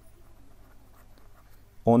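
Faint scratching and tapping of a stylus handwriting on a tablet. A man's voice starts speaking near the end.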